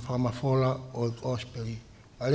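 A man speaking into a microphone, preaching in Tongan.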